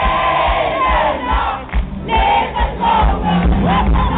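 Concert audience singing and shouting along loudly over a live band's music, with a brief dip in the middle.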